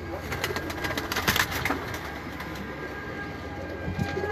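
Domestic pigeons cooing in a loft, with a burst of sharp clatter in the first two seconds.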